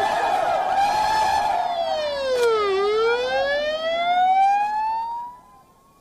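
A siren wailing over crowd noise, its pitch sliding down and then back up. It cuts off abruptly about a second before the end.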